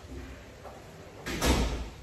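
A door shutting once with a loud, heavy bang about a second and a half in.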